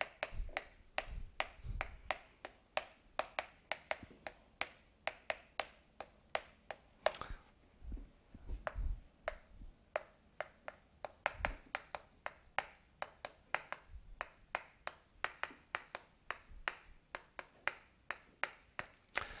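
Chalk clicking and tapping against a blackboard as characters are written, a run of sharp clicks several a second, with a pause of about two seconds in the middle.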